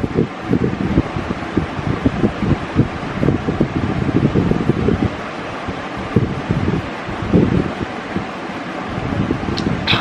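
Steady rushing air noise of a room fan, with irregular low gusts of air buffeting the microphone.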